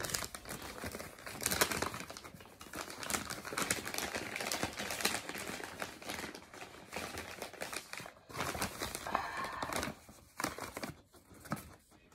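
A bag of embroidery floss crinkling and rustling as it is handled, in near-continuous crackles that die away about ten and a half seconds in.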